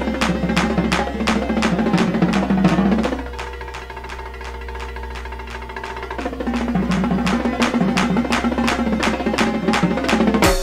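Marching tenor drums played by hand with sticks over a drum-heavy backing track, with sharp hits at a steady pulse. The backing's low sustained part drops out for about three seconds in the middle, leaving a quieter stretch, then comes back in.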